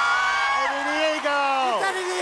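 Excited yelling from a woman and a man: long, drawn-out shouts that overlap and each slide down in pitch as they tail off.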